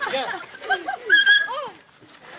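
A dog yelping and whining as it is grabbed and held: a quick run of short cries that rise and fall in pitch, with one longer high whine a little after the middle.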